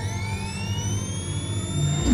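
Electronic riser in a montage soundtrack: several high tones climb steadily in pitch over a low steady drone, building to a whoosh that begins just at the end.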